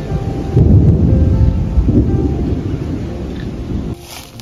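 A loud, low, rolling rumble that swells about half a second in and slowly eases off, then stops abruptly at the end. Soft background music plays underneath.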